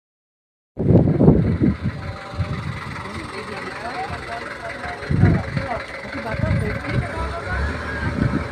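Dead silence for under a second, then outdoor ambience: a low, uneven rumble that surges about a second in and again about five seconds in, with a vehicle nearby and indistinct voices in the background.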